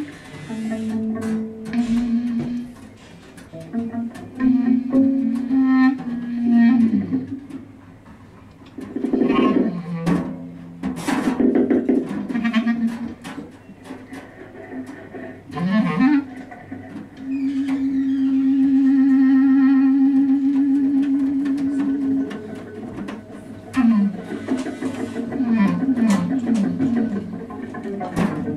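Free improvisation on clarinet, double bass and drum kit: sparse, broken low phrases with scattered drum and cymbal hits. About two-thirds of the way through, a single low note is held for several seconds with a wavering pitch.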